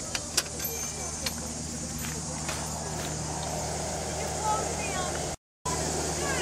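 Steady low hum of air-conditioning equipment running outdoors, with a few sharp clicks in the first second or so. The sound cuts out completely for a moment near the end.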